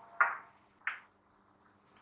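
Small glass jars clinking against each other and on the counter as they are handled: two short, ringing clinks, the first louder, about two-thirds of a second apart.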